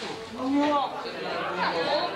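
Indistinct chatter of several voices talking over one another, no words clear.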